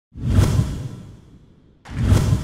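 Whoosh sound effect with a deep low rumble under it, starting suddenly and fading away over about a second and a half; a second whoosh begins just before the end.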